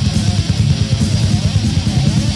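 Death metal band playing from a 1993 cassette demo: distorted electric guitar and bass over a fast, steady, driving rhythm.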